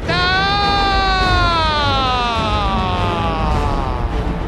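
Football radio commentator's long, drawn-out goal shout: one held cry that rises briefly, then slowly falls in pitch for nearly four seconds.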